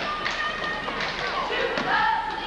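Basketball game in a school gym: sneakers squeaking on the court in several short high squeaks, with taps and thumps of play and spectators' voices.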